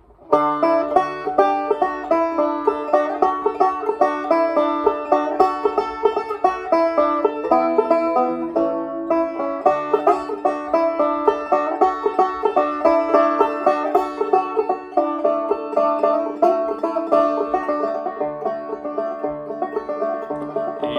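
Resonator banjo played solo: a steady stream of fast picked notes that starts abruptly just after the opening.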